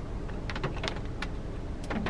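Steady low rumble inside a car cabin, with a few light, irregular ticks over it.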